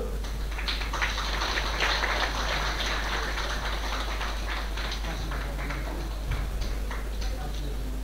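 Audience applauding: a dense patter of many hands clapping that thins out after about five seconds, leaving a few scattered claps.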